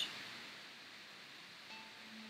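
Faint steady hiss, with soft background music coming in near the end as a quiet held note.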